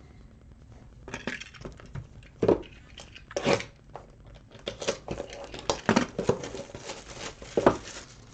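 Hands handling cardboard trading-card boxes and card holders on a tabletop: an irregular run of short rustles, crinkles and light taps, the sharpest about two and a half, three and a half and seven and a half seconds in.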